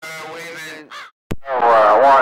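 Voices over a CB radio receiver. A weaker transmission the speech recogniser could not make out fills the first second, a sharp click comes about a second and a third in, and then a louder, warbling voice starts near the end.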